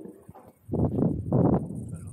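Two loud, dull thuds about half a second apart, a little under a second in: footsteps on the submarine's steel hatch sill and deck grating.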